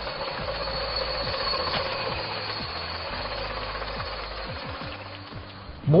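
Miniature steam locomotive working: a steady hiss with occasional knocks, getting quieter toward the end.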